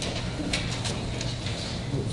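Footsteps and shuffling of people walking across a carpeted meeting-room floor, with a few light clicks and taps about half a second to a second in, over a steady low hum of room noise.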